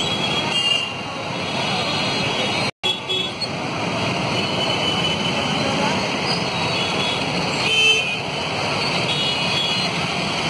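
Busy street traffic of motorbikes, cars and auto-rickshaws running, with a crowd of voices underneath. Horns toot briefly near the start and more loudly about eight seconds in. The sound cuts out for a moment about three seconds in.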